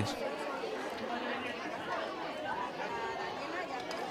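Indistinct chatter of many children talking at once, a steady murmur of overlapping voices with no single voice standing out.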